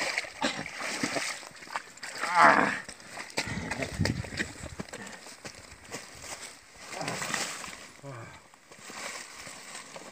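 Splashing through shallow water and reeds as a person wades, with a short wavering vocal sound from a person about two and a half seconds in and another near seven seconds.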